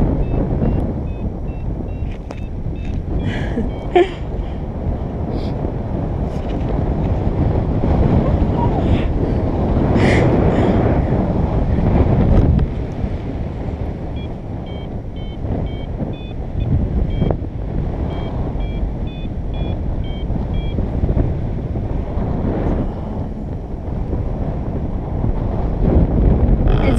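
Airflow rushing steadily over the microphone in paraglider flight, gusting louder for a few seconds near the middle. Two spells of short, high beeps at varying pitches come from the paraglider's variometer, which beeps this way when the glider is in rising air.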